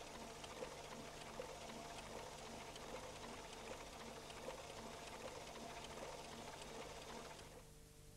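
Faint steady hiss with fine crackle and a low hum, the background noise of an old analogue tape recording. It drops lower near the end.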